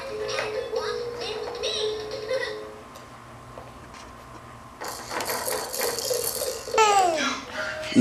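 Electronic zebra baby walker toy playing a recorded song with a sung voice, which stops about three seconds in. About two seconds later louder toy sounds start again, with some rattling.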